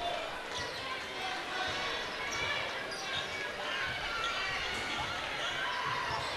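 Basketball being dribbled on a hardwood gym floor, under a steady murmur of crowd chatter.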